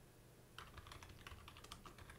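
Faint clicks of computer keyboard keys being typed, a quick irregular run of keystrokes starting about half a second in.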